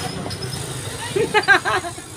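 A motorcycle engine running at idle, a steady low rumble. In the second half a person's voice cuts in with a quick run of about five short syllables, the loudest sound here.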